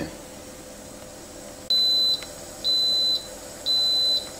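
Instant Pot Ultra Mini electric pressure cooker beeping three times, about a second apart, each a steady high beep of about half a second: the signal that its steam cycle has finished and it has switched to keep warm.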